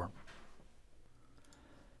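A faint computer mouse click about one and a half seconds in, over quiet room tone.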